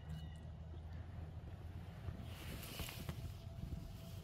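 Wind rumbling on the microphone by a lake shore, a low steady buffeting, with a brief faint rustle of reeds or clothing about two and a half seconds in.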